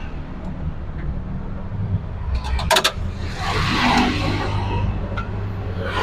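TVS King auto-rickshaw engine running steadily as the bajaj pulls over and comes to a stop. A rushing noise swells and fades around the middle.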